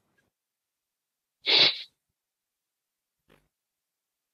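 A single short, sharp breath noise from a person about one and a half seconds in; otherwise silence.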